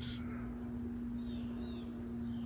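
Outdoor garden ambience: a steady low hum with a few faint, short bird chirps about halfway through.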